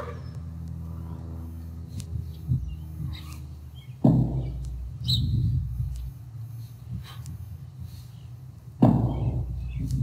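A kettlebell swing being performed, with two sudden loud sounds about five seconds apart, each fading over about half a second.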